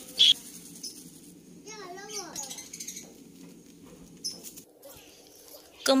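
A plastic bag crinkles sharply once, just after the start, as grated coconut is shaken out of it into a plastic bowl. After that there is only a low steady background, with a faint voice about two seconds in.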